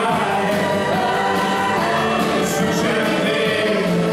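Live gospel band playing, with several women's voices singing together in harmony over the band.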